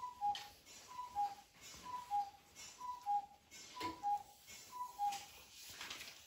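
An electronic two-tone beep, a higher note followed by a slightly lower one, repeating about once a second six times and stopping a little after five seconds in. A soft knock comes about four seconds in.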